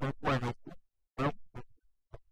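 A man's voice speaking in short phrases, cut off by abrupt silent gaps between them.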